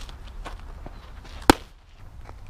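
A softball smacking into a catcher's mitt: one sharp, loud pop about one and a half seconds in, with a few faint ticks before it.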